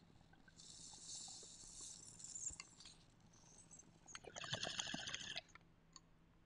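Someone smoking from a small glass pipe lit with a lighter, faint: a soft hiss of the hit being drawn in for about two seconds, then a rougher breathy burst with a fine crackle about four seconds in.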